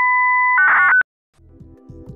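A steady electronic beep tone held for about half a second, then a quick warbling burst of beeps ending on a short higher tone. After a brief silence, soft music begins near the end.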